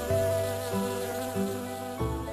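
Cartoon bee buzzing sound effect over gentle background music with notes changing about every half second, from an animated story video.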